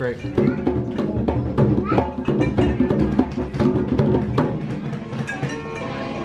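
Hand drums such as bongos played with quick, uneven strikes, giving a busy percussive rhythm.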